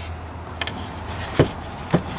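A few short knocks and clicks from a small sulky wheel and tire being handled on a work table, the loudest about one and a half seconds in, over a steady low hum.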